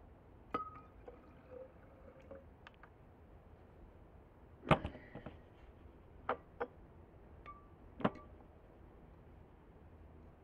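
Glass jars and a glass bottle being handled, with about six sharp knocks and clinks of glass on glass. The loudest comes a little under halfway through, and a couple ring briefly.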